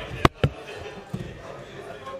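Two sharp knocks on a table top about a fifth of a second apart, a quarter-second in, picked up by the table microphones as a championship belt is lifted off the table, over a low murmur of voices in the room.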